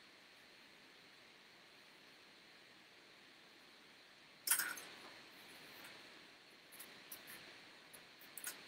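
Faint room hiss, then about halfway through a sudden knock with a short rattle after it, and a few light clicks near the end: a paintbrush and water cup being handled as one brush is rinsed and put aside and another picked up.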